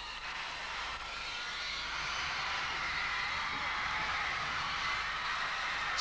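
Audience applauding and cheering, swelling gradually.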